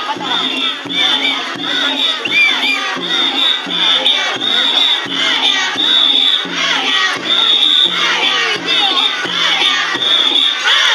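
A crowd of children shouting and chanting together as they haul a danjiri float by its rope, with a whistle blown in short, even blasts about every two-thirds of a second to keep the pullers' rhythm.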